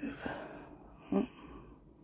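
A person's breathy exhale, then one short hummed sound a little over a second in.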